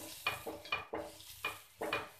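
Steel spatula scraping and pressing a paratha on a nonstick tawa in quick short strokes, about five in two seconds, each with a faint metallic ring.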